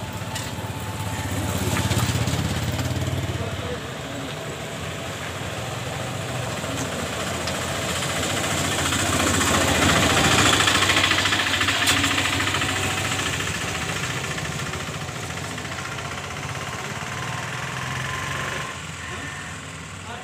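Motor vehicle engine running with road noise, swelling loudest about halfway through.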